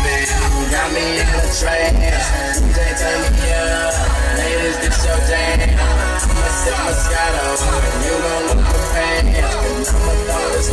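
Music with vocals played loud through a car stereo with two Kenwood 12-inch subwoofers on a 500 W RMS amplifier, the bass coming in heavy pulses under the melody, heard inside the car's cabin.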